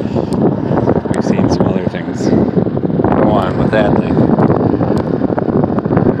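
An indistinct voice talking, with steady rustling noise on the microphone as the phone is carried and handled.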